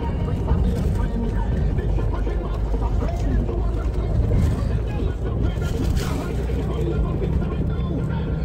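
Steady low road and engine rumble of a moving car, with indistinct voices talking over it.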